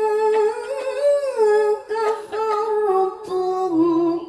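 A woman reciting into a microphone in the melodic Quran-recitation style: long held notes with ornamented turns and slides in pitch, stepping down to a lower note near the end.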